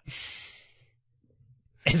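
A man's short breathy sigh into a microphone, fading away within half a second, then a pause before a voice starts speaking near the end.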